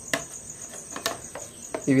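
A cricket chirping steadily in the background, a high pulsing trill. A few light clicks and knocks come from the plastic photo frame as it is handled.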